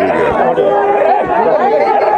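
Men's voices talking over one another, with crowd chatter around them.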